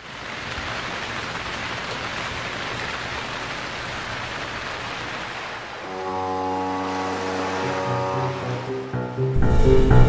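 A steady rushing noise of rain. About six seconds in, a held musical chord comes in, and near the end loud, low, repeated bass notes begin.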